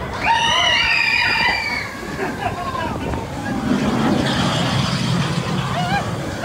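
Mine-train roller coaster running on its track: a burst of several high, excited rider voices near the start, then a low rumble of the train's wheels that builds from about halfway and carries on as the cars come out into the open.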